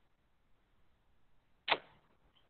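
Near silence on a dropped-out online call, broken once near the end by a single brief click.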